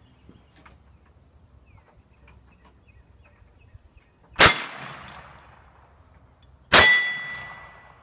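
Two shots from a Ruger Bearcat .22 LR single-action revolver, about two and a half seconds apart. Each is followed by the ring of a steel target plate being hit, and the second ring hangs on longer.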